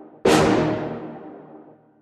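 A single note of a sampled keyboard-style melody sound played back from an FL Studio piano roll, struck about a quarter second in and fading away over a second and a half.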